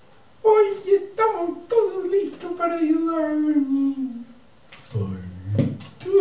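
A performer's character voice for a puppet: one long, drawn-out wordless vocal that slides slowly down in pitch, then a short, low vocal sound near the end.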